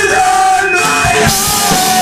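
Rock band playing live in a practice room: electric guitars and a drum kit, with steady drum strikes under the guitar.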